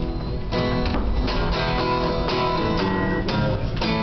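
Acoustic guitar strumming chords in a steady rhythm, an instrumental passage with no singing.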